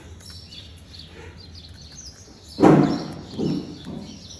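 Birds chirping faintly in the background. About two and a half seconds in comes a loud, short rush of noise, and a weaker one follows about half a second later.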